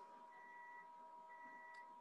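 Near silence on a video call, with a faint steady electronic tone and a faint higher tone that sounds twice, each about half a second long.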